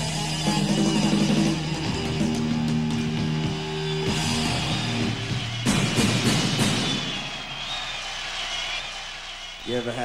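Live rock band on stage: electric guitars and bass hold chords over drums, then a dense crash of drums and cymbals comes in about six seconds in, and the sound fades away near the end.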